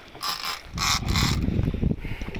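Penn International 30T conventional fishing reel ratcheting in two short bursts while a hooked fish, a tuna, is fought on the line.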